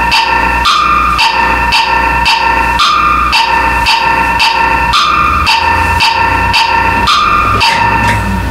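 Electronic music loop: a sustained synth tone holding one pitch and stepping up to a higher one about every two seconds, over an even beat of about two pulses a second with a low bass underneath. It cuts off near the end.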